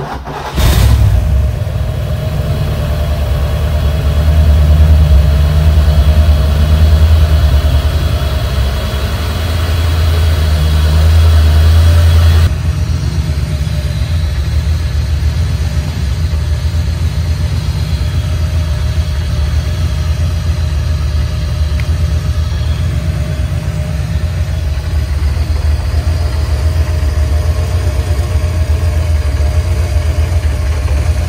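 A Chevrolet small-block V8 with tuned port injection in a 1987 Camaro Z28 starts right at the beginning and runs at a fast idle. About twelve seconds in it drops suddenly to a lower, steady idle. It is running with the alternator belt removed, after the alternator pulley was found slipping and red hot, and with the ignition timing only roughly set.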